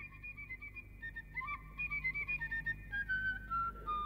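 A flute playing a slow, simple tune of held notes, faint and thin, that steps down to lower notes near the end.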